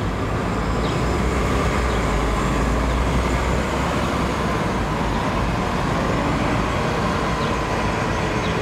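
Steady low rumble of city traffic, an even noise with no distinct events.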